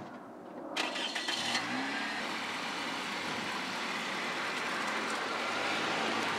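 Car engine cranked by its starter for under a second, catching about a second and a half in with a brief rise in revs, then running steadily.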